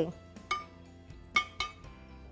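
A metal spoon clinking lightly against a Saladmaster 11-inch stainless steel skillet, three times, while spreading crumble topping over apples. Faint background music runs underneath.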